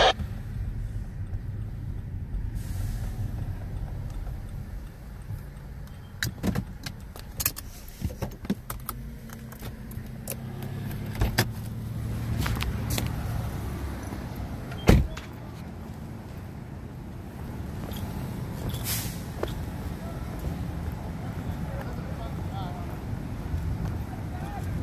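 Steady low rumble inside a slow-moving car's cabin, with scattered clicks and knocks and one loud knock about fifteen seconds in.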